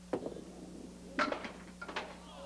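A candlepin bowling ball thuds onto the wooden lane and rolls, then about a second later crashes into the candlepins with a clatter of hard knocks, followed by a few more pin knocks as the pins scatter.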